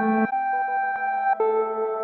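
Ambient electronic music from a Max/MSP patch: sustained pitched tones with many overtones, run through comb filters, allpass filters and delay lines. The tones step to new pitches about a quarter second in and again near a second and a half, with short echoing repeats in between.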